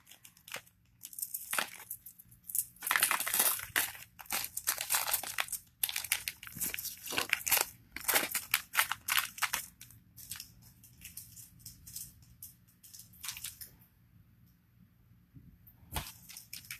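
Small plastic bag crinkling and rustling in irregular bursts as it is handled and put away, dying down near the end.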